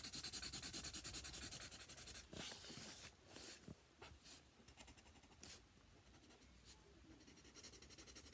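Orange felt-tip marker scribbling back and forth on paper, faint quick strokes several times a second at first, then fewer and quieter strokes after a few seconds.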